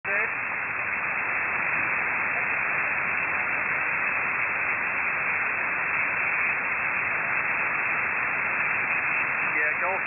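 Steady hiss of static from a shortwave receiver tuned to the 40-metre amateur band, with a faint voice in the noise at the very start and an operator's voice coming through near the end.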